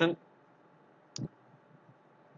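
A single short, sharp click a little over a second in, against quiet room tone.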